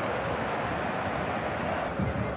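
Steady crowd noise from a football stadium's stands.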